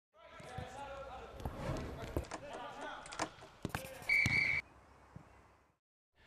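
A football being kicked and bouncing on a training pitch: about six sharp thuds spread over the first four seconds, with players' voices in the background. Just after four seconds a short, high, steady tone sounds for about half a second, louder than anything else.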